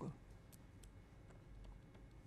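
Near silence with a few faint, short clicks of a stylus tapping and writing on a tablet.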